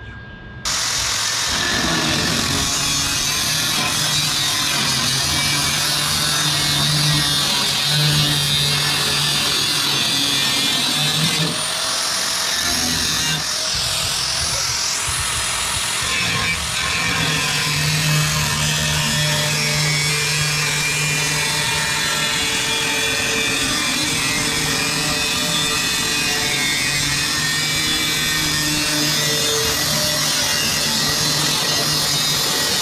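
Angle grinder with a cut-off wheel slicing through the rusted sheet-steel rocker panel of a 1941 Chevrolet cab, running steadily under load. It starts abruptly about half a second in.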